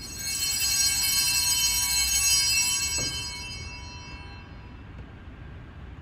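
A set of small church altar bells rung once: many high, clear tones start together, ring for about three seconds, then die away.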